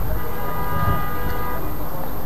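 A horn sounds once, a steady pitched tone held for about a second and a half, over a steady low rumble.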